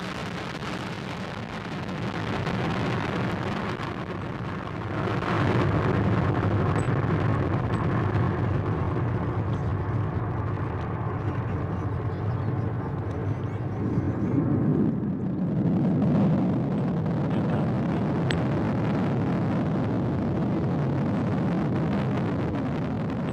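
Solid-fuel rocket booster of a modified Peacekeeper missile firing during ascent: a steady, noisy rumble that gets louder about five seconds in.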